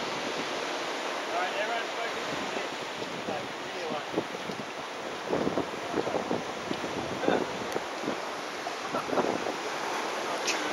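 Steady hiss of surf washing on the beach, mixed with wind on the microphone, with faint voices now and then.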